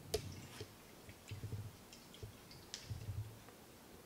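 Faint clicks and light handling noises of a capped flask being held and swirled to dissolve vitamin C powder in water, the sharpest click just at the start.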